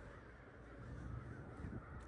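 Crows cawing, faint, over a low rumble on the microphone.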